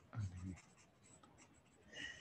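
Faint scratching and tapping of a stylus on a tablet screen, with a short low murmur of voice just after the start.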